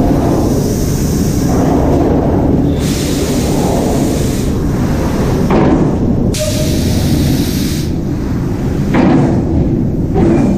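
Automated car-body assembly machinery running in a large hall: a steady clatter and rumble with thuds and clanks. Two bursts of hiss come about three and seven seconds in.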